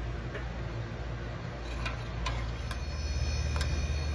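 A metal spoon clinking against a stainless steel pan about five times while stirring a cream sauce, over a steady low hum that grows louder from about two-thirds of the way in.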